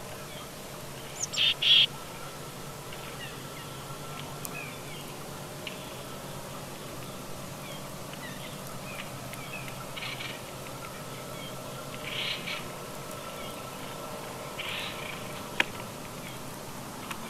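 Wild birds calling: a few short, harsh calls, the loudest pair about a second and a half in, with fainter chirps between them, over a steady faint hum.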